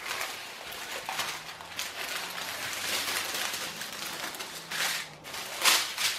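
Plastic rustling and crinkling as strips of sealed drill bags are handled and laid out flat, with a louder rustle near the end.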